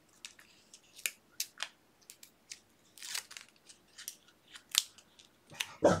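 Release paper being peeled by hand off small pieces of foam mounting tape: a scatter of faint, irregular crinkles and ticks.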